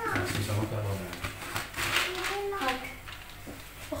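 Quiet speech with some light handling noise in a small kitchen, a short scuffing or rustling sound about two seconds in.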